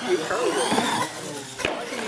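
Indistinct voices of people talking, over which a radio-controlled monster truck's motor whines up in pitch as it drives. A single sharp knock comes a little past halfway.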